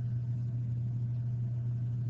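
A steady low hum, unchanging, with nothing else heard over it.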